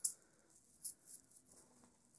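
A few faint, short clicks and rustles from small juggling balls being handled in the hand: one at the very start and two about a second in.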